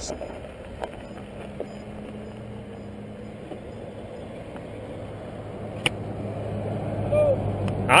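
Roadside traffic with a steady low engine hum, and a passing vehicle growing louder over the last few seconds.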